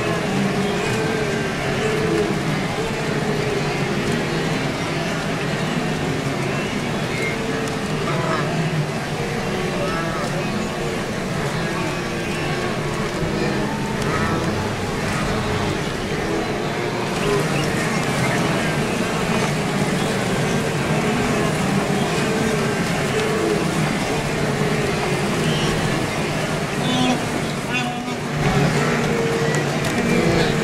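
A large wildebeest herd calling in a continuous chorus of low, nasal grunts, over a steady noise of splashing river water.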